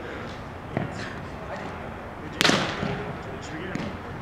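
A loud sharp smack of a roundnet ball being struck, about two and a half seconds in, echoing in a large indoor hall, with a fainter knock about a second in. Voices murmur in the background.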